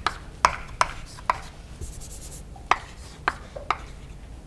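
Chalk writing on a blackboard: a series of sharp, irregular taps as the chalk strikes the board, with a brief scratchy stroke about two seconds in.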